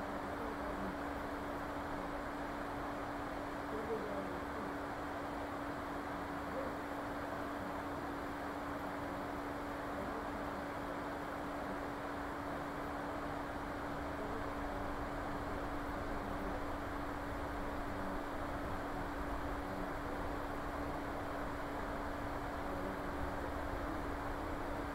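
Steady hiss with a constant low hum: open-microphone background noise during a silent stretch of a screen recording.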